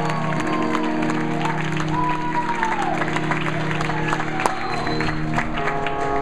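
Crowd clapping and cheering over sustained electric guitar notes ringing out from the amplifiers. A new held chord comes in near the end.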